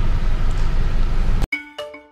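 Steady low road rumble inside a moving car's cabin, cut off suddenly about one and a half seconds in by two struck bell-like notes that ring and fade, the start of a musical jingle.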